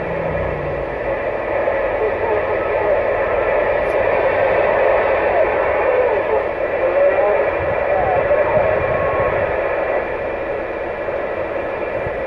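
Cobra 148GTL CB radio's speaker on receive: a steady hiss of static on channel 11 with a weak, garbled distant voice buried in it.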